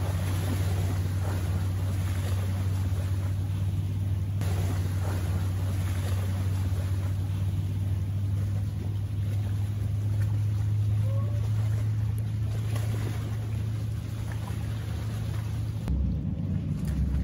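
Outdoor seaside ambience picked up by a phone microphone: small waves washing against shoreline rocks under a steady low drone.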